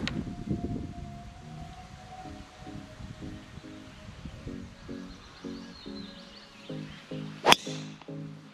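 Background music with a steady, repeating pattern of notes. Near the end, a single sharp crack as a golf driver strikes the ball off the tee.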